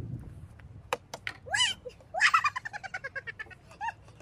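A few sharp taps, then a small child's high-pitched squeal followed by a quick run of short giggling squeals that fall in pitch, with one more short squeal near the end.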